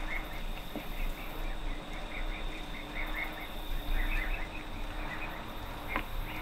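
Faint, rapid high-pitched chirps from an animal, a few a second, over a quiet background.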